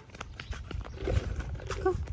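Brief snatches of a child's voice outdoors, over a low rumble and faint clicks.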